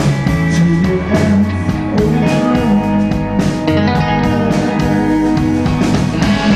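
Live rock band playing an instrumental passage of a song, led by electric guitar.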